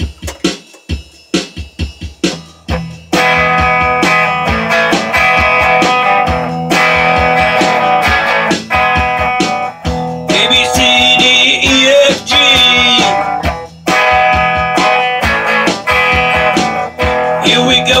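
Rock song intro. A drum-machine beat plays alone for about three seconds, then strummed Gibson Les Paul electric guitar chords and a full backing come in loud. A high wavering lead line runs on top for a few seconds about ten seconds in.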